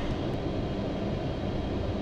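A car idling while stopped, heard from inside the cabin as a steady low rumble with a faint hiss.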